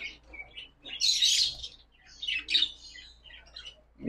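Caged young poultry chirping in short, high calls, the loudest burst about a second in and a few more around the middle.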